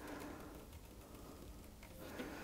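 Very quiet room tone with no distinct sound.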